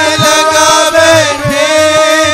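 Devotional song (pad): voices chanting a sustained line over held instrumental tones, with two deep hand-drum strokes.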